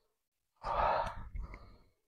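A man's loud, forceful breath out, sudden at the start and trailing off over about a second, paced to one repetition of a dumbbell press-and-pull exercise.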